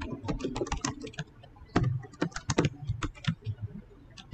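Typing on a computer keyboard: quick, irregular keystrokes in short runs.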